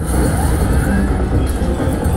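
Video slot machine's game audio as a free spin starts: a loud, steady low rumble mixed with the game's music while the reels spin.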